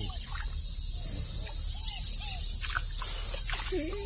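Steady, high-pitched drone of insects chirring without a break, with faint voices murmuring underneath.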